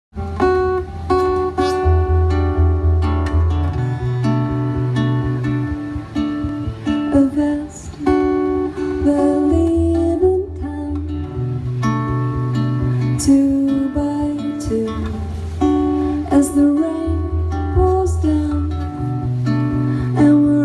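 Live band playing an instrumental introduction: strummed acoustic guitar over long held notes from the backing band and a deep bass line that changes every second or two.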